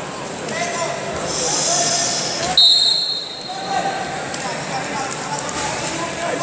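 A referee's whistle, one short shrill blast about two and a half seconds in, signalling the start of the wrestling bout, over the chatter of people in a gym.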